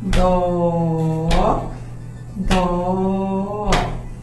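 A woman singing the solfège syllable "Dó" twice, each held on the same pitch for about a second and a half, while beating time with her hand: a sharp strike on each beat, about one every 1.2 seconds. This is a metric reading, note names sung while the rhythm is beaten, closing on the last two half notes of a simple C major exercise in 2/4.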